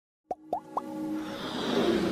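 Logo intro sound effects: three quick pops, each sliding up in pitch, about a quarter second apart, then a rising whoosh over a held tone that swells louder.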